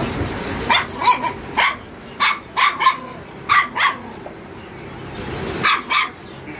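A puppy yapping in short, high-pitched barks, about nine of them in irregular runs, with a pause in the middle.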